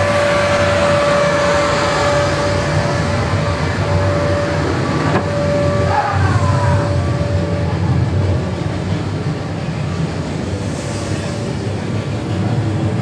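A haunted-attraction ambient soundscape: a loud, steady low rumbling drone with a held high tone over it that fades out about two-thirds of the way through. There is a short falling wail about six seconds in.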